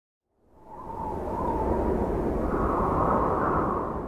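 A whoosh sound effect for an intro logo: a rushing swell that rises out of silence about half a second in, holds with a faint tone that climbs a little, and begins to fade near the end.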